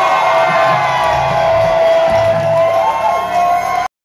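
Live rock band at the close of a song: a loud held note with sliding pitches rings over bass notes while the crowd cheers. The sound cuts off suddenly near the end.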